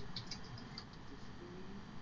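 Faint computer keyboard typing: a quick run of soft key clicks in the first second, thinning out after that.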